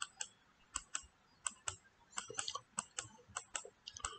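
Faint, irregular clicking at a computer: about eighteen short, light clicks, coming faster in the second half.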